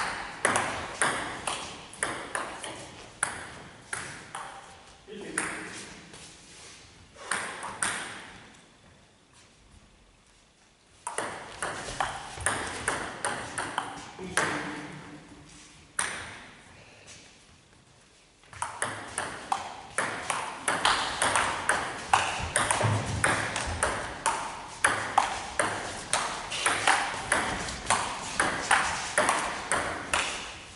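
Table tennis rallies: a celluloid ball clicking off the paddles and the table at a quick, even pace, echoing in a sports hall. There are short rallies early on and quiet gaps between points, then a long rally through the last third.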